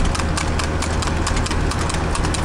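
Hooves of a young pacing horse in harness striking tarmac at speed: a quick, even run of sharp hoofbeats over a steady low rumble.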